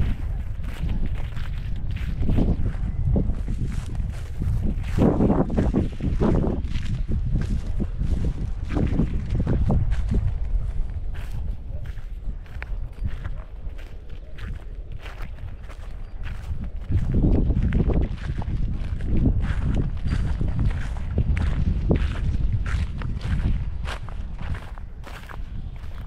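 Footsteps crunching and crackling through dry harvested crop stubble and straw, a steady run of short crisp steps over a constant low rumble.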